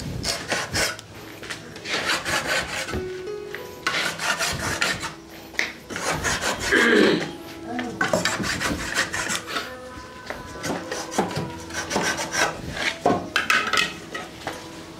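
Wood being rubbed by hand in quick rasping strokes, coming in several runs with short pauses between. A short, loud falling sound comes about seven seconds in.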